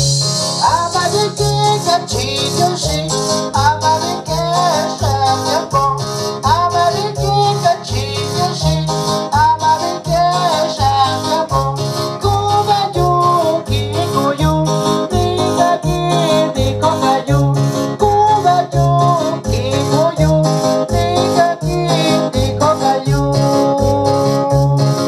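Live dance music from an electronic keyboard: a steady pulsing bass and rhythm pattern under a wavering lead melody, with shaker-like percussion ticking along.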